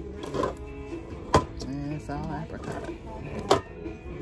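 Metal food cans knocking against one another as they are shifted by hand on a store shelf: two sharp knocks, about a second in and again near the end, over background music and voices.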